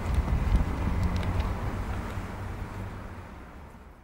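Low rumble and hiss of outdoor background noise with wind on the microphone, fading out steadily.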